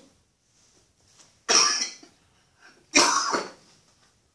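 A man coughing: two loud, abrupt coughs about a second and a half apart.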